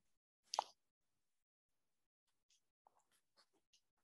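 Near silence: room tone on a video call, broken by one brief sound about half a second in and a few faint ticks near the end.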